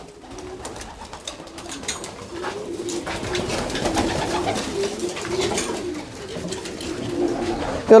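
Pigeons in a loft cooing together, many low wavering coos overlapping into a continuous sound that swells in the middle, with a few light wing flutters and scuffs.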